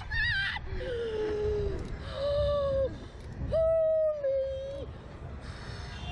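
Women riders on a Slingshot reverse-bungee ride letting out long, drawn-out screams as the capsule is flung, three held cries with the longest and loudest a little past halfway, over a low rumble of wind on the microphone.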